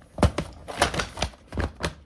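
Hard plastic pieces of a Hot Wheels monster truck volcano playset knocking and clicking as they are pushed and fitted together, about seven sharp clicks at uneven intervals.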